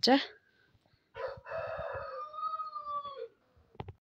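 A single long animal call, likely a bird, held steady for about two seconds and dropping in pitch as it ends, followed by a short click.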